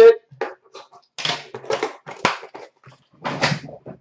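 Hands handling trading cards at a counter: a few short rustles and scrapes, with a sharp click about two seconds in.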